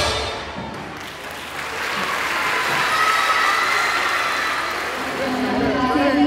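Music fades out, then audience applause builds and carries on for several seconds before dying down as a woman's amplified voice begins near the end.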